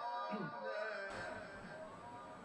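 Faint, fading echo of a man's chanted Quran recitation dying away during a pause between verses.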